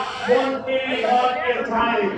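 People talking: a man's voice with other voices close by, and no engine heard.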